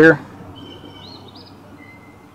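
A bird calling faintly in the background: a few thin high chirps with a short rising-and-falling warble about halfway through, and a brief higher note near the end.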